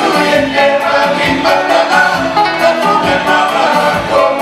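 Live band music with several singers singing together in chorus over a steady beat, typical of a Congolese rumba/ndombolo group on stage.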